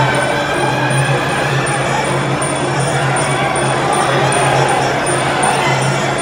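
Live Muay Thai ring music (sarama): a reedy Java oboe plays a wavering melody over drums, with small ching cymbals keeping a steady ticking beat.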